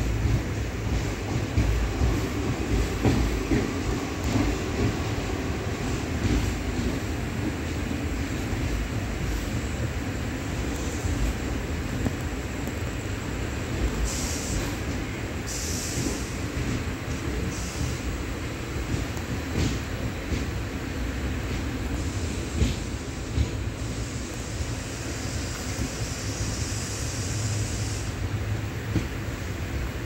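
Indian Railways passenger train running through a station, heard from on board: a steady rumble of wheels on the rails and carriage noise.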